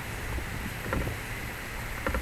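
A low, steady outdoor rumble with a faint knock about a second in.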